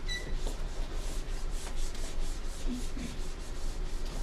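Writing on a board by hand: a run of short scratchy strokes, several a second, with a brief squeak near the start.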